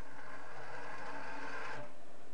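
Low-friction dynamics cart rolling along its track, drawn by a hanging mass over a pulley: a steady mechanical whirr of wheels and pulley that stops shortly before the end.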